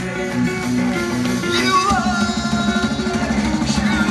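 Post-hardcore band playing live: guitars and drums with a sung vocal, recorded from within the crowd. About halfway through, the playing turns from separate held notes into a fast, driving rhythm.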